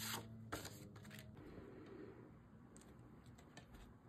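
Faint handling of paper and cardstock on a tabletop: a couple of light taps in the first half second, then almost nothing.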